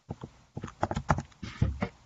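Computer keyboard being typed on: a quick, uneven run of key clicks, busiest in the second half.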